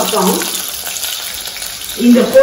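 Whole small white onions frying in oil in a steel pot: a steady sizzle, with a few spoken words over it at the start.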